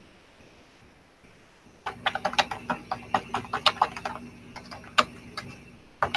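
Typing on a computer keyboard: a quick, irregular run of key clicks that starts about two seconds in and lasts about three and a half seconds.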